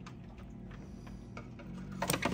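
Quiet room tone: a low steady hum with a few faint ticks.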